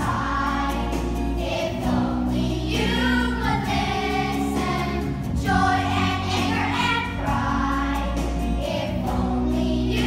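A group of children singing together over instrumental music with long held bass notes.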